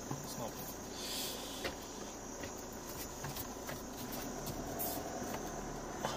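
Vehicle interior noise while driving on a sandy dirt track: a steady rumble of tyres and engine with scattered small knocks and rattles, heard from inside the cabin.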